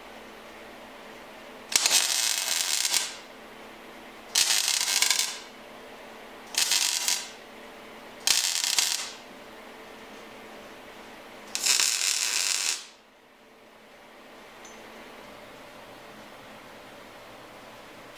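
Welder tack-welding steel motor-mount tubing: five short bursts of arc crackle, each about a second long, with pauses between them.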